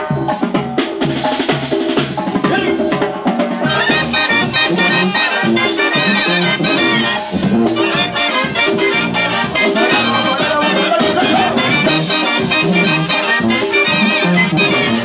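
Mexican banda playing live: clarinets and trumpets carry the melody over tuba and drums with a steady beat, the band getting fuller from about four seconds in.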